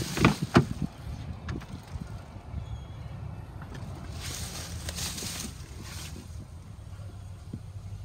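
Rear side door of a 2002 Toyota Sequoia unlatched and pulled open: a few sharp clicks and knocks in the first half second. After that, a low steady rumble of wind on the microphone, with a brief rush of noise about halfway through.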